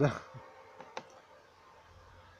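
A man's voice trails off at the start, then two small, sharp clicks come close together about a second in.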